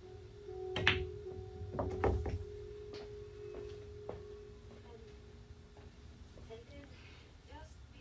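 Pool cue tip striking the cue ball, then, about a second later, a short run of clicks as the cue ball hits the eight ball and the eight drops into the side pocket, followed by a few softer knocks as the cue ball rolls off the rail.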